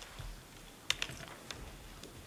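A few sharp, keyboard-like clicks at the panel table close to the microphone: two in quick succession about a second in and another half a second later, over quiet room tone.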